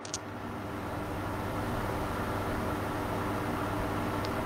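A steady droning noise with a low hum under it. It swells in over the first second and then holds even, with a short click at the very start.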